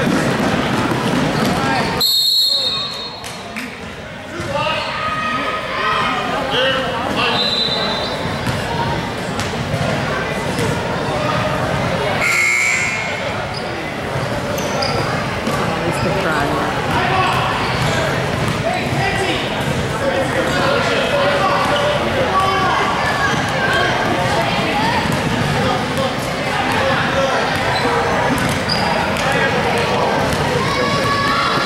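A basketball being dribbled on a hardwood gym floor, with voices and the footfalls of players and spectators echoing in the large gym. A short high-pitched tone sounds about two seconds in.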